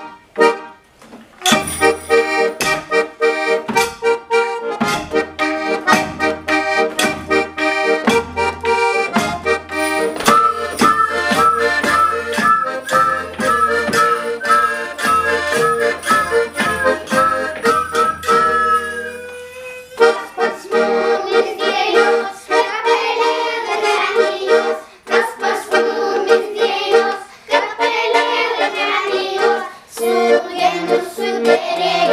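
Instrumental introduction to a Lithuanian folk song played by a children's folk ensemble. A steady clicking rhythm of tambourine and wooden percussion runs over a pitched accompaniment with a low bass. From about ten seconds in, small mouth-held wind instruments play a wavering high melody, and the music changes character about twenty seconds in.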